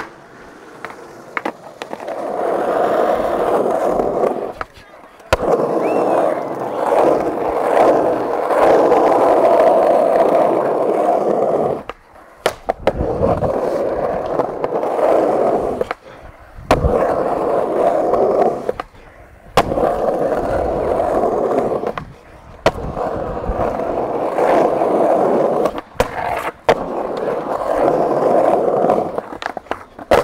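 Skateboard wheels rolling over concrete in long runs of several seconds each. Sharp clacks from the board's tail popping and landing break up the runs.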